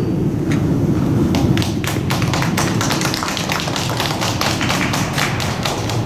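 Scattered hand clapping from a small crowd in an ice arena, a few irregular claps a second, over the arena's steady low rumble.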